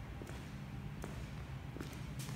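Footsteps on a wooden floor, a few separate steps under a second apart, over a steady low hum.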